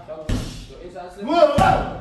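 Boxing gloves striking focus mitts: two sharp smacks about a second and a quarter apart, the second one louder.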